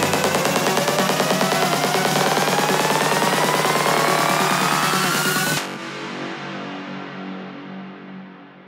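Dark psytrance played in a live DJ set: a dense electronic track with a synth sweep rising steadily in pitch. A little over halfway in, the full mix cuts off suddenly, leaving a quieter, muffled sustained layer that fades away: a breakdown in the track.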